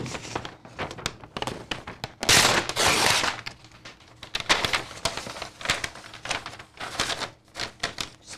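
Butcher paper rustling and crinkling as it is handled, with a burst of loud rustling a little over two seconds in, among scattered light clicks and knocks.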